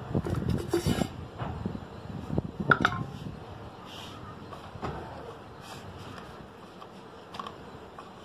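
Several sharp knocks and clicks of kitchen things being handled, clustered in the first three seconds and loudest just before three seconds, where one strike rings briefly like a spoon against a bowl. After that only a faint steady hiss with a couple of isolated ticks.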